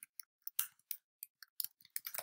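Computer keyboard keys being typed: about eight light, separate key clicks over two seconds, unevenly spaced.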